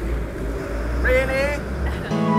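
City street noise: a steady low rumble of traffic, with a short stretch of a voice a second in.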